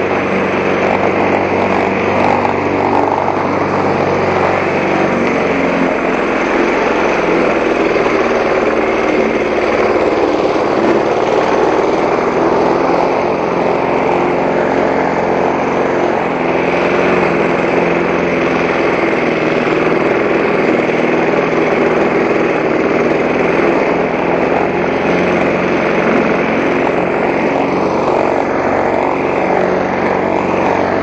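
Walk-behind gasoline push mower running steadily while cutting grass, its small single-cylinder engine holding a constant note under load.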